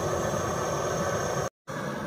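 Jetboil-style butane canister stove burning at full flame with a steady gas hiss as it heats water. The sound cuts off suddenly about one and a half seconds in, and a quieter steady background follows.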